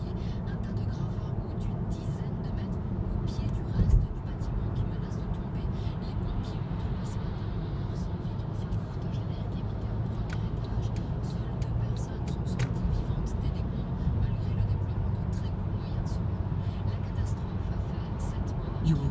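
Steady road and engine noise heard inside a moving car's cabin at motorway speed, a low rumble, with a single thump about four seconds in.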